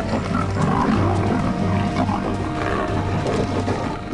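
A big cat growling over background music that holds a steady low drone.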